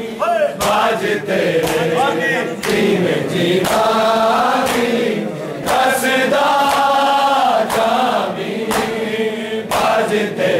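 A nauha chanted by many men's voices together, with the collective slap of hands on bare chests (matam) landing about once a second in time with the chant.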